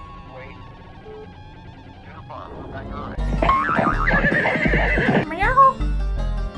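A horse whinnying over background music: a loud, shaky neigh starts about three seconds in and ends with a falling call.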